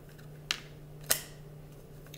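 Two short, sharp clicks of a tarot card being handled and laid on the table, about half a second apart, over a faint steady hum.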